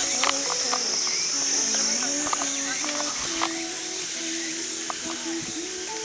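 Insects buzzing steadily at a high pitch, with music of slow held notes playing underneath and a few light clicks.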